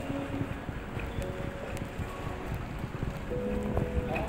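Shop background music over the low, steady rumble of a shopping trolley rolling across a tiled supermarket floor.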